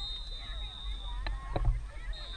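Open-air soccer-field ambience with faint far-off voices and a low rumble. A thin, steady high tone sounds for about the first second, and a couple of soft knocks follow.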